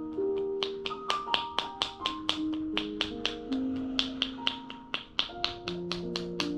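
Palms-together chopping massage strokes: sharp, even claps and pops at about four a second as the masseuse's joined hands strike the body. Soft piano-like spa music plays underneath.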